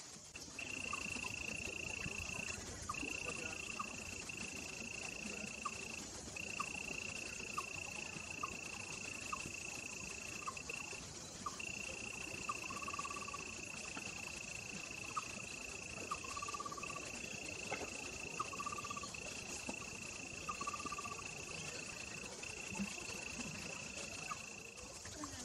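A steady, high-pitched insect trill that drones in long stretches of a few seconds, broken by brief gaps, over a constant high hiss. Short chirps sound lower down at intervals.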